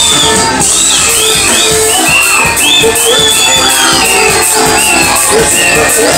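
Loud live band music from drums and electric guitar: a steady beat with regular cymbal ticks under high, bending melodic lines.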